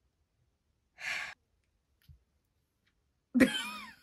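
A short breath pushed out through the mouth, like a sigh, about a second in; then a woman's voice begins with a laugh near the end.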